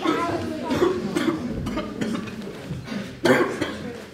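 A person coughing, with indistinct speech in the first second or so.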